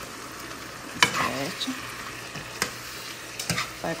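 Spoon stirring and scraping chunks of cod, peppers and onions with tomato paste in a sizzling frying pan. A sharp clink of the spoon against the pan comes about a second in, with several lighter knocks later.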